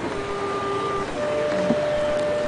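Clarinet playing slow, held notes: one note for about a second, then a higher note held on, over a steady background hiss.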